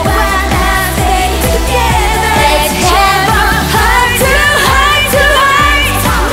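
A female K-pop vocal sung live into a microphone over a pop dance backing track with a steady bass beat.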